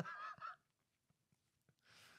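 A man's short, high-pitched, honk-like laugh lasting about half a second at the start, then near silence.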